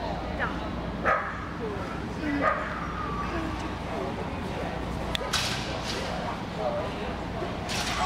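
Shetland sheepdog giving a few short barks and yips during an agility run, with two sharp cracks, one about five seconds in and one near the end.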